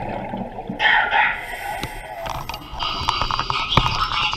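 Underwater sound through a submerged camera: a bubbling rush about a second in, then a quick run of clicks and knocks as a spacesuit glove grips and works the metal camera-attachment tool.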